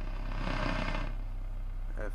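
A pickup's dashboard radio on the AM band giving about a second of static hiss, which then fades. Underneath runs the steady low hum of a 1998 Ford Ranger's 2.5-litre four-cylinder engine idling.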